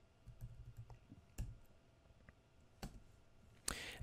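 A few faint, separate computer keyboard key presses, single clicks about a second apart.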